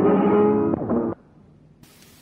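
Flamenco guitar music from a 1930 shellac 78 rpm disc, its sound cut off above the treble, ending about a second in. It leaves only faint surface hiss from the record, which turns brighter near the end.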